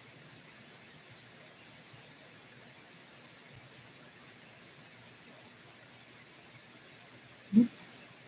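Faint room tone, broken once near the end by a short, low vocal sound from a man.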